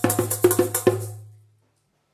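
Djembe played with the hands: a quick run of about six sharp, ringing strikes in the first second, the last of them dying away about a second and a half in.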